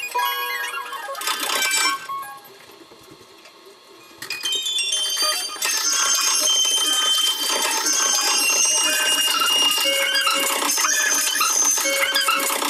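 Live band music from electric guitars, bass and drums on a small club stage. The playing drops away for about two seconds, a couple of seconds in, then starts again with long, high ringing tones over it.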